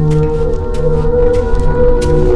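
Background film score: layered, sustained low tones held steadily under a few light, irregular high ticks.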